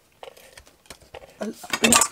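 Hands handling a strip of paper and small craft tools on a desk: a scatter of light taps and clicks that thickens into a louder run of clicks near the end.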